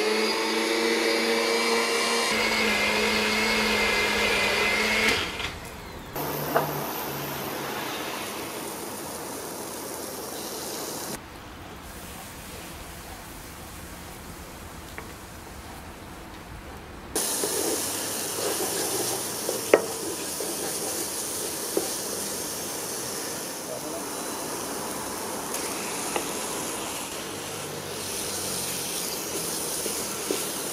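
Small electric spice grinder running for about five seconds as it blends the Thai green curry paste, then stopping. Curry paste then fries and sizzles in a non-stick pan, getting louder about halfway through, with a few light knocks of a wooden spoon against the pan.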